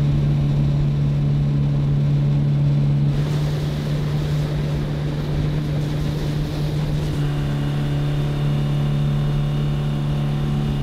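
Yamaha 65 hp four-stroke outboard motor running at a steady speed, driving a jon boat through the water, with the rush and splash of water along the hull. The water rush grows louder from about three seconds in until about seven seconds.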